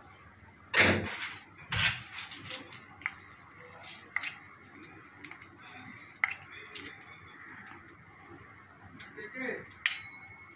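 Clatter of metal kitchen utensils: a sharp knock about a second in, another about two seconds in, then scattered lighter clicks.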